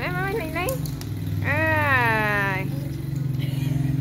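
A child's high voice calling out in short sliding sounds, then one long drawn-out sliding call in the middle, over a steady low hum.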